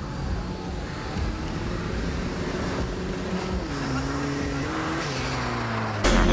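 Volkswagen Golf Mk1 engine held at high revs during a burnout, tyres spinning on the tarmac. The engine note steps down a little past halfway and then holds steady.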